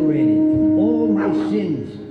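A performer's voice giving short cries that rise and fall in pitch, several times, over a steady held musical note; the note drops out near the end.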